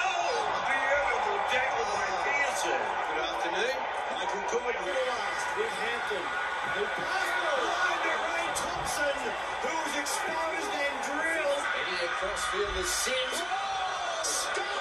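Rugby league TV broadcast audio: a commentator's voice over steady stadium crowd noise.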